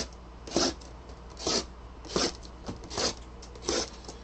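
A small blade slitting the plastic shrink wrap on sealed trading-card hobby boxes, one box after another: five short rasping strokes, a little under a second apart.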